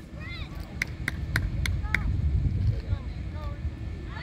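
Wind rumbling on the microphone at an outdoor soccer field, with faint distant shouts from players. About a second in come five sharp claps in quick succession, about three a second.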